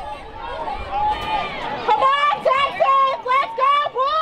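High-pitched voices shouting, turning in the second half into a rapid run of short, evenly repeated calls, about two or three a second, like a chant.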